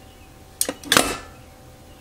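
Steel mesh steamer basket being lifted out of the Instant Pot's inner pot, knocking against the pot twice: two sharp clicks about a third of a second apart, the second louder and briefly ringing.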